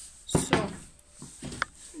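A few knocks and clicks as a wooden panel and a folding rule are handled on a table saw's metal table, with the sharpest knock about a third of a second in and smaller clicks around a second and a half. The saw itself is not running.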